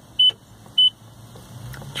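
A high-pitched electronic warning beep sounding twice, about two-thirds of a second apart, as part of an evenly repeating series.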